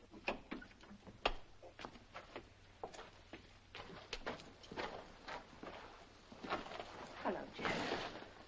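Horse hooves clopping irregularly, a few loose knocks a second, with faint voices in the background.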